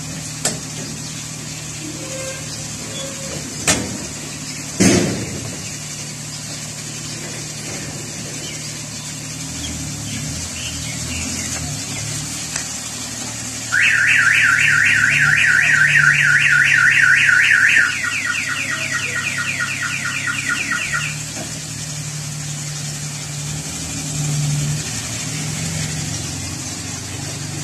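Suzuki Bolan van idling steadily, with two knocks about four and five seconds in. Midway a car-alarm style electronic siren warbles rapidly and loudly for about four seconds, then carries on more quietly for about three seconds more before stopping.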